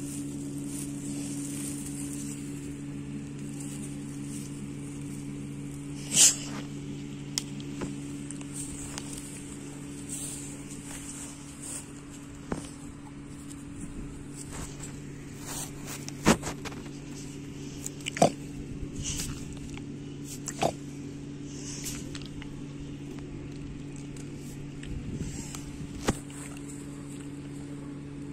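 A steady low hum at a fixed pitch, with scattered short sharp clicks; the loudest click comes about six seconds in.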